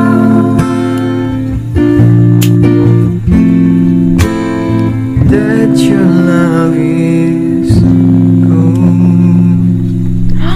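Acoustic guitar strumming sustained chords, with a man singing over it in places; an acoustic mashup cover of pop songs.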